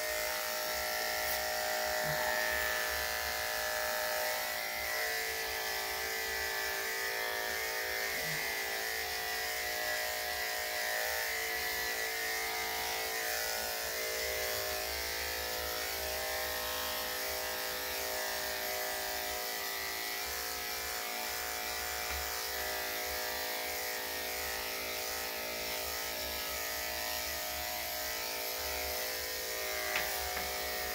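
Corded electric dog clippers running steadily with an even buzzing hum while being worked over a Yorkshire Terrier's short-clipped coat.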